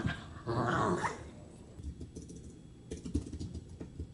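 Two small Lhasa Apso–Shih Tzu–Poodle mix dogs play-growling as they wrestle, a loud rough growl in the first second, followed by scattered light clicks in the second half.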